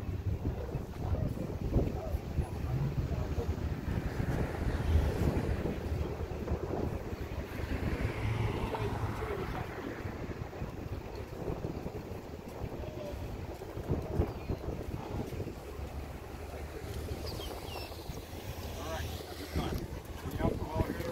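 Wind buffeting the microphone, a steady uneven low rumble, with faint indistinct voices in the background.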